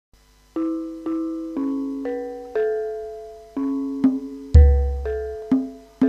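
Gamelan metallophones playing an opening melody, one struck note about every half second, each ringing and fading. A deep low stroke sounds about four and a half seconds in.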